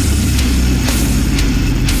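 Brutal death metal recording playing: heavily distorted, low-tuned guitars under dense drumming with repeated cymbal crashes, loud and unbroken.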